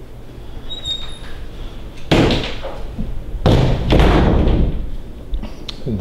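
Pantry door being closed: two loud thuds about a second and a half apart.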